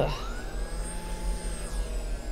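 A small electric blower motor whirring up to speed, its whine rising over the first half second and then running steadily, with a low electrical hum underneath.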